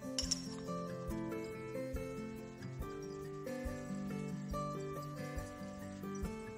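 Background music with a steady beat, with a brief glass clink just after the start as a glass beaker's rim touches the neck of a conical flask while the mixture is poured in.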